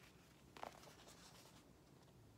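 Near silence, with one brief faint rustle of a hardcover picture book's paper pages being handled and turned toward the viewer about half a second in.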